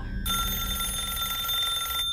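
A steady, high electronic beep tone that starts about a quarter second in, holds one unchanging pitch for nearly two seconds, and then cuts off sharply.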